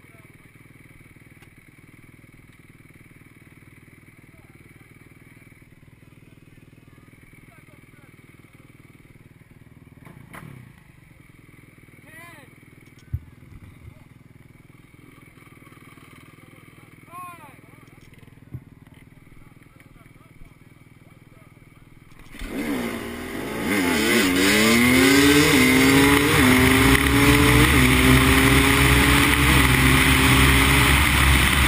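Enduro dirt bike engine running at a low level, then about 22 seconds in revving hard and pulling away, its pitch climbing and dropping again and again as it shifts up through the gears. It stays loud to the end.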